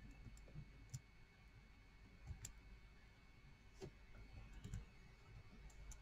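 Near silence: room tone with a few faint, sharp clicks scattered at irregular intervals.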